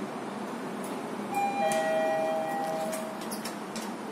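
Otis lift's electronic chime sounding two overlapping held notes, a higher one and then a lower one, each lasting about a second and a half, over a steady hiss in the car, with a few light clicks.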